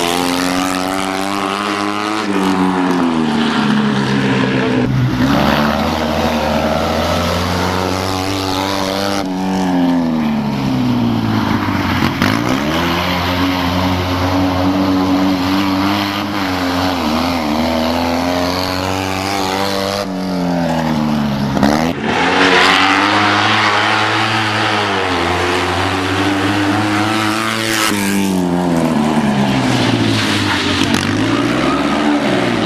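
Fiat 126p rally car's air-cooled two-cylinder engine driven hard, revving up and falling back again and again as it accelerates, lifts and shifts through the corners of the stage.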